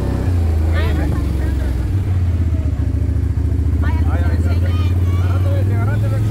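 ATV engine running steadily at low road speed, a constant low drone with a slight rise in pitch just after the start.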